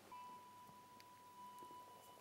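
Near silence, with one faint, steady high note sounding over the room tone.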